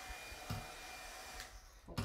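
Craft heat tool (embossing heat gun) blowing steadily with a faint whine, heating white puff paint so it puffs up. There is a short soft bump about halfway through, and the blowing eases off shortly before the end.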